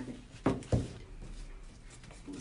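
Two short knocks about a third of a second apart, from a wooden canvas frame being handled on a tabletop.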